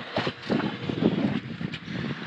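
Chrome self-tailing sailboat winch turned by hand, giving irregular clicks and scrapes; the owner thinks it needs grease and cleaning.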